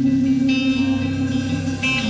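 Live band music led by electric guitar: two guitar chords struck, about half a second in and again near the end, over a held low note and a bass line.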